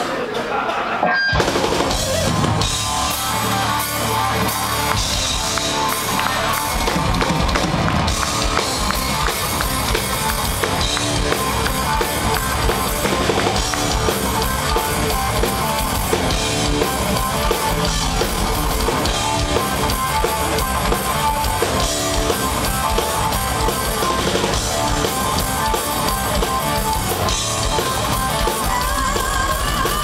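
A heavy progressive metal band playing live, with distorted electric guitar, bass and a drum kit driving a dense, loud groove, heard from the audience. After a brief break about a second in, the full band comes in together.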